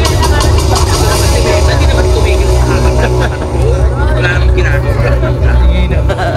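Indistinct voices of several people talking, not addressed to the microphone, over a steady deep rumble.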